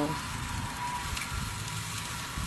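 Ribs sizzling on a charcoal grill as a steady hiss, with a low rumble of wind on the microphone.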